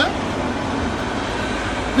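Steady street traffic noise: a low rumble under an even hiss, with no single event standing out.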